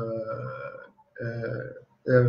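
A man's voice holding two long, drawn-out hesitation sounds, 'uhh… uhh', the first about a second long and the second shorter after a short gap.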